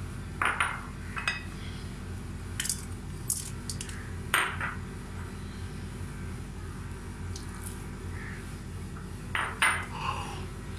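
Stainless steel bowl clinking and knocking a handful of times as it is handled and ingredients are dropped in, over a steady low hum.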